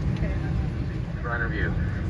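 Steady low rumble in the cabin of an Airbus A319 waiting at the gate. A crew announcement over the cabin speakers starts about a second in and sounds thin and band-limited.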